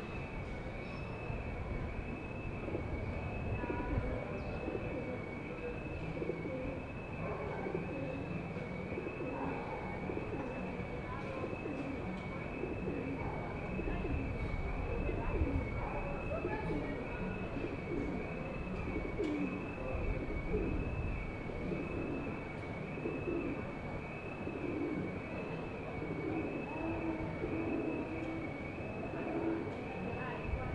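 Pigeons cooing in a street's background hum, with low calls coming and going and a few held coos near the end. A steady high tone wavers evenly up and down throughout.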